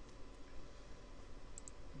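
Two faint computer mouse clicks about one and a half seconds in, over low room hiss.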